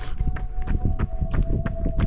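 Running footsteps on a tarmac lane, a quick even series of footfalls, with the handheld camera jostling as the runner moves.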